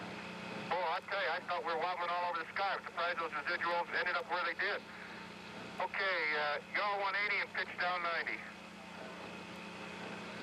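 Voices over the Apollo 10 air-to-ground radio link in two stretches of talk, the first starting about a second in and the second starting about six seconds in. A steady hiss and hum of the transmission runs underneath.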